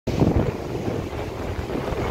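Wind buffeting the microphone: a low rumble, gustiest in the first half-second, then steadier.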